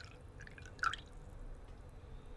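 Coffee trickling and dripping from a stovetop moka pot into a cup, faint, with one louder drop a little under a second in.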